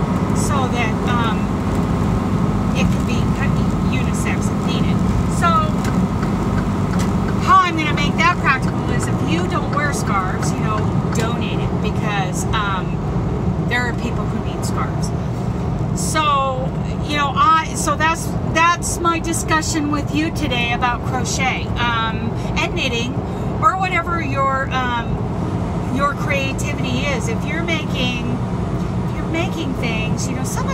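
A woman talking over the steady low drone of a truck's engine and road noise, heard inside the cab while driving.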